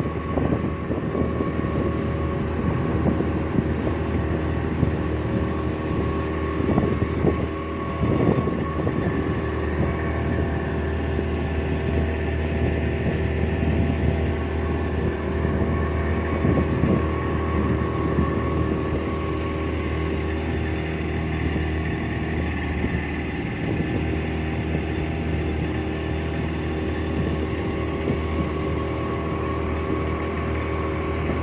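Speedboat engine running steadily at full throttle while the boat is under way, with wind noise over it.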